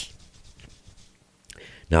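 A pause in a man's speech: faint room tone, then a short breath about one and a half seconds in before he starts speaking again.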